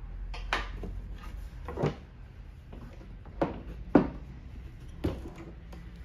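Wooden knocks and bumps from a brass-bound mahogany writing slope being handled and shifted on a wooden table, about five separate knocks, the sharpest about four seconds in.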